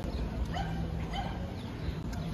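Short calls from an animal, repeated a few times and each falling in pitch, over a steady low hum of background noise.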